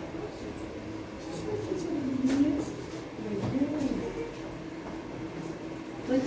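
Indistinct voices of people talking in the background, rising and falling, over a low steady rumble.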